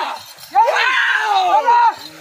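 Several men shouting and yelling over one another, urging on a pair of bullocks as they pull a stone block; after a brief lull, a loud burst of shouts comes about half a second in.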